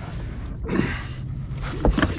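Handling noise as a captured alligator is hauled up against the side of a boat: a short breathy rasp about two-thirds of a second in and a knock near the end, over a steady low hum.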